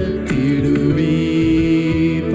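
Tamil Christian worship song performed live: a voice rises into one long held note with vibrato, over keyboard, bass guitar and cajon accompaniment.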